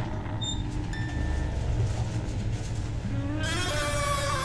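A low steady drone, then near the end a wooden door creaking open: a falling, pitched creak with a hiss.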